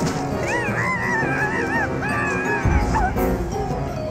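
High-pitched, wavering cartoon vocal cries, squeaky and animal-like, over the cartoon's background music. A short low thump comes near three seconds in.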